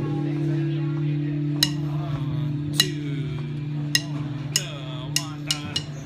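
An amplified instrument holds a steady low note while sharp clicks count the song in: three about a second apart, then coming faster and faster toward the end.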